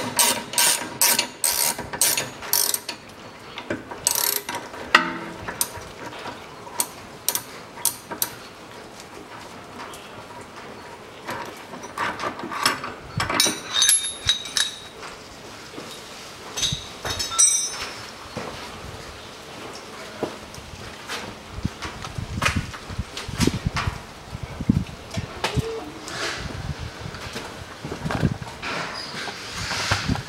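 Sharp metallic clicks of a wrench working the nut on a threaded-rod bushing press as it is loosened, quick and regular in the first few seconds. Scattered clinks follow as the steel cups and rod of the press come off, then duller knocks near the end.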